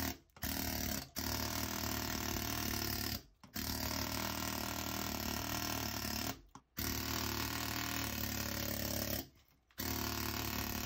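A power chipping hammer with a flat chisel bit breaking up a concrete floor slab, run in bursts of one to three seconds with brief pauses between, five runs in all.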